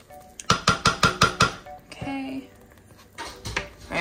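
A spoon knocking rapidly against the stoneware crock of a slow cooker, about eight quick ringing clinks in a second, followed by a few softer knocks and scrapes near the end.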